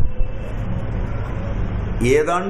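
Steady low rumble of background noise in a pause between spoken phrases, with a faint steady hum.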